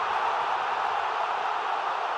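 A steady rushing noise from the intro sound effect, the tail of a whoosh, fading slowly.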